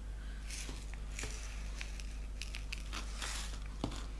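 Light clicks and short rustles of square diamond-painting drills being handled in a plastic drill tray, with a sharper click near the end.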